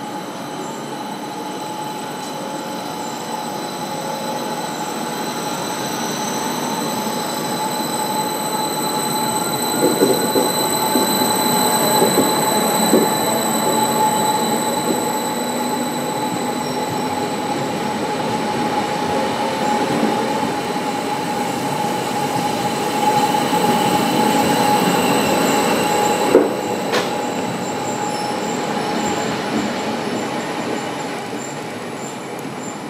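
ODEG Stadler KISS double-deck electric multiple unit pulling out and accelerating past: a steady electric traction whine with a tone rising as it gathers speed, wheels clattering over rail joints, louder as the cars pass. An abrupt change near the end.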